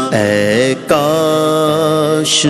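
Male voice singing a naat unaccompanied, drawing out a wordless melismatic line: a note that bends and falls, a brief break just before a second in, then one long held note.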